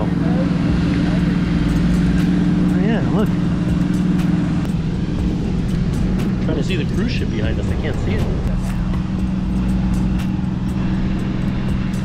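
Wind rumbling on the microphone of a camera carried aloft on a parasail, over a steady low hum that shifts in pitch a couple of times. Brief muffled voices come in about three seconds in and again around six to eight seconds.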